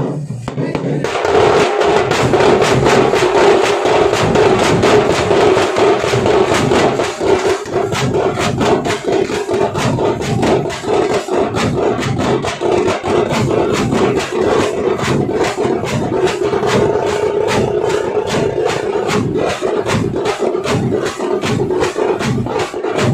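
A tamate drum troupe, with tamate frame drums beaten with sticks together with large bass drums, playing a loud, dense, fast rhythm. The full beat comes in about a second in.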